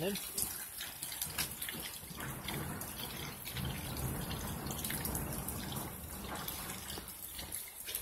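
Rain falling steadily, with scattered drips and trickling water.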